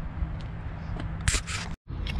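Low wind rumble on the microphone of a handheld camera, with a few clicks and brushing noises of the camera being handled about a second in, then the sound cuts off suddenly.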